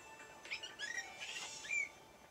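Dolphin whistles in a TV soundtrack: a quick series of short, high squeaks that rise and fall, over faint background music.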